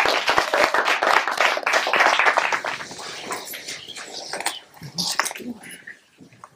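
A small audience applauding. The clapping is loudest for the first couple of seconds, then thins out and dies away.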